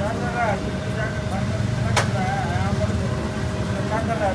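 Busy sweet-shop kitchen: a steady low rumble with a constant hum and faint background voices. About two seconds in there is a single sharp clank of metal utensils.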